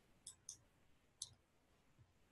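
Near silence broken by three faint computer mouse clicks: two close together, then one more about a second in, as the presentation slides are advanced.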